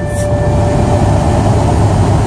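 Steady low rumble of a car heard from inside its cabin, with a faint steady tone that fades out about half a second in.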